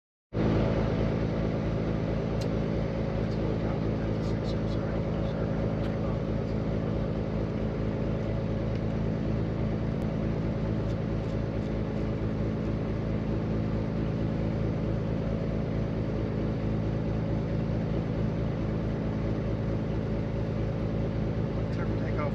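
Beechcraft S35 Bonanza's six-cylinder piston engine running steadily at low power, heard from inside the cockpit, with the propeller turning slowly while the plane waits on the runway before the takeoff roll.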